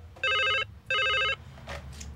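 White corded desk telephone ringing electronically: two short bursts of about half a second each, close together.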